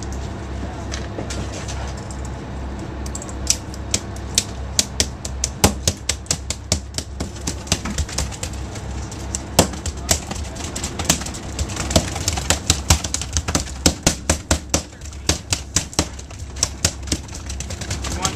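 Freshly landed tuna beating their tails against the boat's deck: an irregular run of sharp knocks, several a second, starting about three seconds in and thinning out near the end, over the boat's steady low engine hum.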